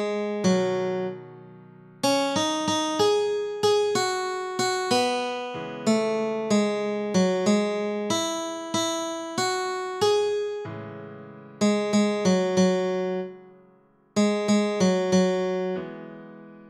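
Guitar playing a slow single-note melody from a tab arrangement at half speed, one plucked note after another. The line pauses twice, about a second in and near the end, where a held note dies away.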